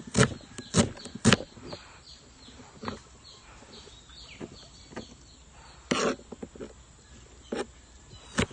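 Kitchen knife dicing an onion by hand, the blade knocking irregularly on the cutting surface: a few quick strokes at the start, a single one around three seconds in, and another short run of strokes near six seconds.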